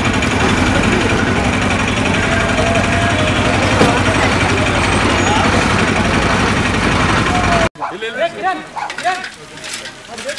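Busy bus-station din: a crowd of voices over steady engine noise from the buses. It cuts off abruptly about three-quarters of the way through, leaving a quieter scene with a few scattered voices.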